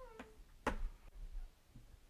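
Chalk on a blackboard as a bracketed term is written: a single sharp tap about two thirds of a second in, then faint scratching, just after the trailing end of a spoken word.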